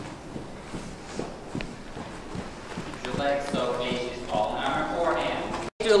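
Hoofbeats of a horse moving over the soft dirt footing of an indoor riding arena, heard as scattered dull knocks. From about halfway, voices talk over them.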